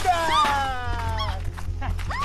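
A woman's long cry of distress, falling steadily in pitch over about a second and a half.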